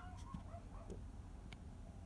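Quiet room tone with a couple of faint clicks from small plastic model parts being handled, and a faint wavering tone in the first second.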